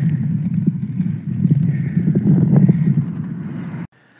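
Wind buffeting a handheld phone's microphone while riding a bicycle: a loud, dense, low rumble that cuts off abruptly near the end.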